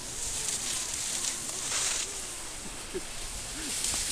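Skis sliding and scraping on packed snow, a hiss that swells twice as the skis turn and carve. Faint distant voices are heard underneath.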